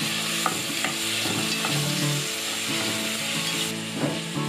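Shrimp shells and heads frying in oil in a pot, sizzling steadily while being stirred, with a couple of short clinks of the utensil against the pot. This is the shells being fried as the first step of a shrimp stock.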